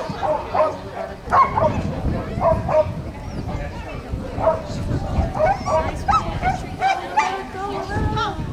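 A dog barking repeatedly, short barks coming in quick runs of several at a time.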